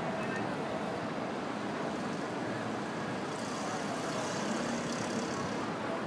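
Steady wash of distant city traffic noise, with a hiss that grows brighter for a few seconds from about halfway through.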